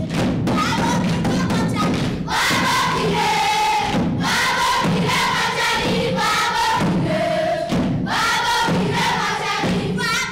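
A children's choir singing a Gusii (Abagusii) folk song together, the sung phrases growing stronger about two seconds in, over repeated thuds in time with the dancing.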